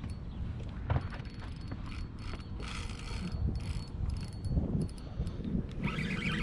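Spinning reel being cranked to bring in a hooked fish, its gears and drag giving many small, irregular mechanical clicks over a steady low rumble.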